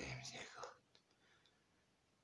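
A man's soft, breathy speech trailing off in the first second, then near silence.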